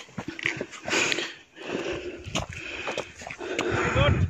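Footsteps crunching irregularly on a gravel and rock walking track.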